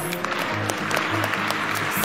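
Audience applauding, a steady patter of many hands clapping, over background music with steady low notes.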